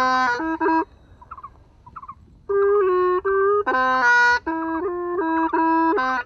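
Hmong raj nplaim, a free-reed bamboo pipe, playing a melody of short held notes; it stops for about a second and a half near the start, then carries on.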